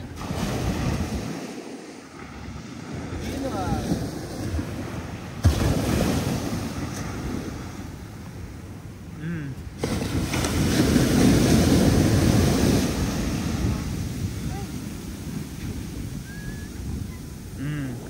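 Ocean surf breaking and washing up a sand beach in rising and falling surges, with the biggest wash coming about ten seconds in. A brief sharp knock sounds about five seconds in.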